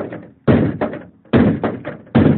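Repeated hard blows to a catfish's head to kill it, about one every second, each a loud knock followed by a couple of smaller rebounding knocks.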